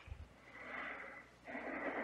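Soft human breathing: a long breath out, then a breath in, after a brief low thump at the start.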